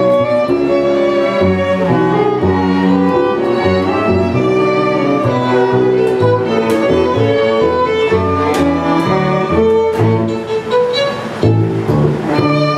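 String quartet playing: violins and cello bowing together, with a moving bass line in the cello under the violins.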